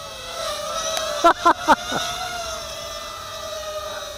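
Eachine Racer 180 tilt-rotor drone's 2205 2350 kV brushless motors whining as it comes down from a hover and lands, the pitch sliding down and then settling. Three short sharp sounds come about a second and a half in.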